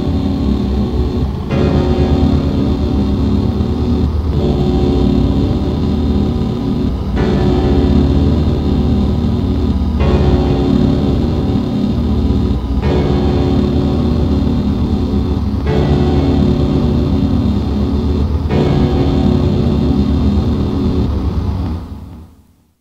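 Lo-fi raw black metal instrumental: a dense, droning wall of sustained distorted chords with no clear drumbeat, changing chord about every three seconds. The track stops at the very end.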